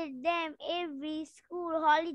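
A young child reciting a memorised answer in a sing-song, chanting voice, its pitch rising and falling in short phrases broken by two brief pauses.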